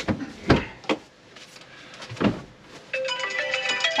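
A few knocks and handling bumps as cushions and cab fittings are moved about. About three seconds in, music with bright ringing tones starts and carries on.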